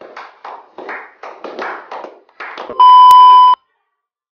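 A small group of people clapping for about two and a half seconds, followed by a loud, steady electronic bleep lasting under a second that cuts off suddenly.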